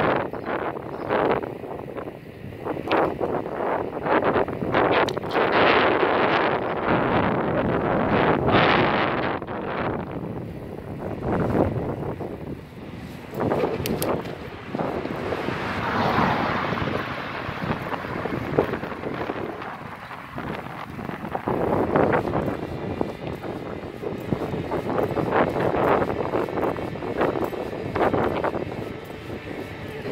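Aprilia Tuono 1000 motorcycle running under way, its loudness surging and easing several times, mixed with wind buffeting on the microphone.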